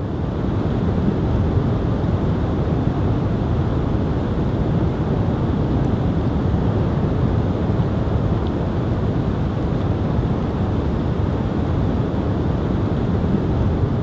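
A steady, deep rushing noise without speech or music, fading in at the start and holding even throughout.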